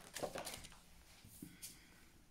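Tarot cards being handled: faint light clicks and swishes as a card is slid off the deck held in the hand, mostly in the first half second with a couple more about a second and a half in.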